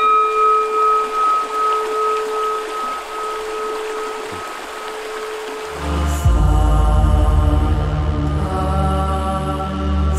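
A Tibetan singing bowl struck once with a padded mallet, ringing with two clear tones that waver in a slow pulse and fade. About six seconds in, meditative music with a deep, steady drone comes in over it.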